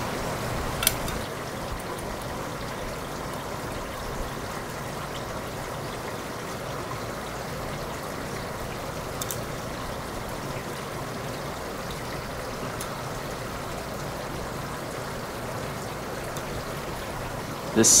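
Steady rushing background noise with a sharp click about a second in and a couple of faint ticks later, from a hex key working the set screws of a plastic pulley on a steel axle.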